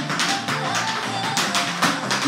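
Tap shoes striking a wooden floor in a quick series of sharp taps, the loudest near the end, over recorded backing music.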